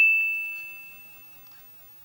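A single high ding, struck just before and ringing on as one clear tone that fades away over about two seconds.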